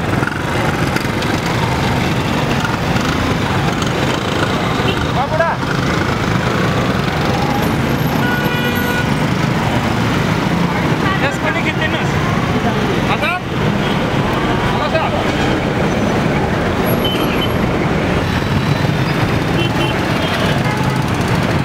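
Busy city street ambience: a steady din of traffic and a crowd's voices, with short vehicle horn toots now and then, a cluster of them about halfway through.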